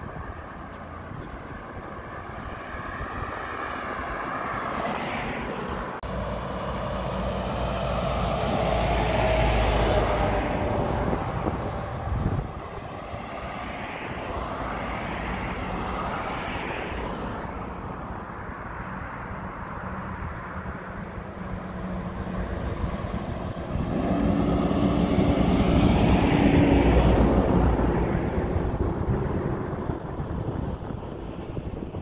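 Road traffic: cars driving past on a street, their engine and tyre noise swelling and fading away. The loudest passes come about a third of the way in and again near the end.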